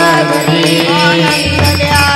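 Devotional Marathi bhajan: women's voices chanting in unison, with small brass hand cymbals (taal) struck in a steady rhythm.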